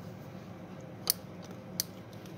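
Side cutters snipping the excess wire ends at an RJ45 module's terminals: two sharp snips, a little under a second apart.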